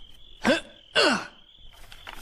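Two short wordless vocal sounds from a character about half a second apart, the first rising in pitch and the second falling, over a faint steady high tone.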